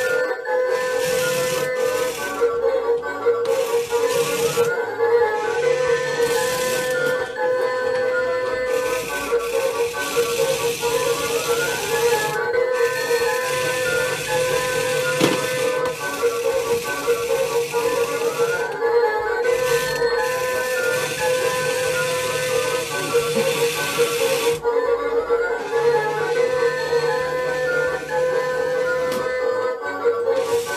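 Candy Grabber toy claw machine playing its built-in electronic tune, a tinny repeating melody over one held note, while its motor whirs in stretches that start and stop as the claw is moved.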